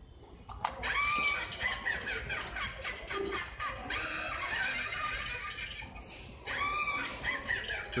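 Halloween witch animatronic playing its recorded sound track through a small built-in speaker: spooky music with a high, wavering voice. It pauses briefly about six seconds in, then starts again.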